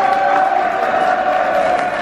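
A football crowd in the stands chanting together, holding one long sung note over the noise of the crowd.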